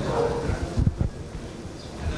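Room noise in a conference hall, with faint voices murmuring early on and two short low thumps about a second in.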